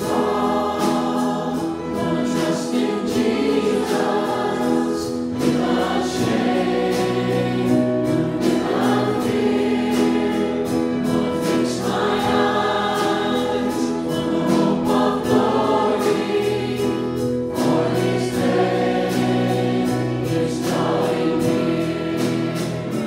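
A worship song sung by a group of voices over instrumental backing with a steady beat.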